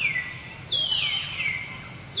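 A macaque screaming: short, high-pitched squeals that slide downward, one at the very start and a quick run of several from about two-thirds of a second in. These are the distress screams of a monkey being chased.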